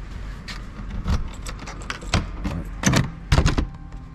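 Metal lever handle and latch of a wooden door clicking and rattling as the door is opened, with a series of knocks; the loudest come about three seconds in.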